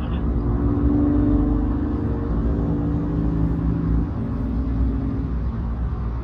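BMW M2 Competition's twin-turbo straight-six running steadily while the car is driven, with a low road rumble. The engine note drops slightly about four seconds in.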